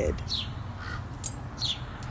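Bird calls: two short, high, falling chirps and a faint brief call, over a steady low outdoor rumble.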